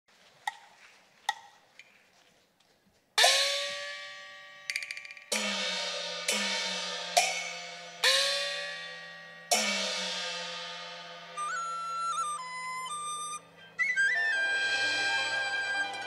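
Chinese opera percussion and band opening an instrumental introduction. A few sharp clicks give way to a run of gong strikes, each ringing with a pitch that bends upward as it dies away. A high wind-instrument melody enters about eleven seconds in, and the fuller ensemble joins near the end.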